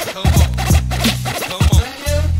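Hip hop beat with DJ turntable scratching over a bass line and kick drum.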